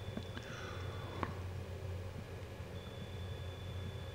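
Faint steady low hum with a few soft clicks, the clearest about a second in.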